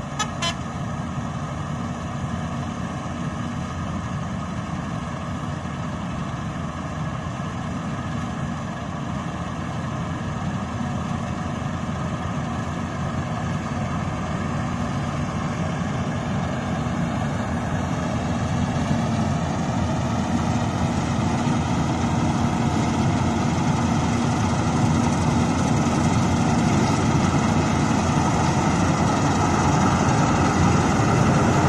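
KS 9300 combine harvester harvesting ripe rice, its diesel engine and threshing machinery running steadily and growing louder as it comes closer.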